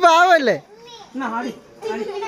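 Children's voices at play: a shrill, wavering shout in the first half-second, then quieter chatter.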